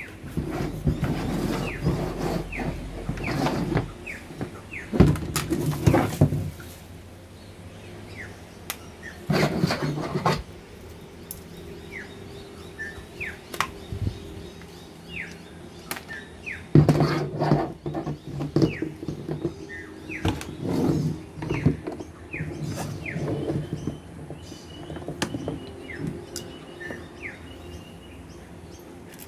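Short, falling chirps of a small bird repeat throughout, over knocks and rattles of hard plastic parts being handled: the carry handle of a Kärcher K2 Basic pressure washer being pushed onto its body, then a coiled hose being handled. The loudest knocks come about five seconds in and again about seventeen seconds in.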